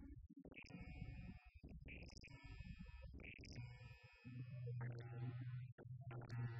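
Serge STS modular synthesizer patched with Scrotum Lab modules playing a sparse electronic passage of short separate tones and noisy blips. About four seconds in, a steady low drone enters beneath them.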